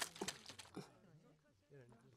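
Faint crunching and mouth noises of tortilla chips being eaten, a few short crunches in the first second, then near silence.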